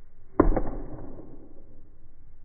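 An arrow shot from a 45 lb recurve bow at a target about ten yards off: two sharp knocks a fifth of a second apart about half a second in, the first the louder, likely the string's release and the arrow striking the target.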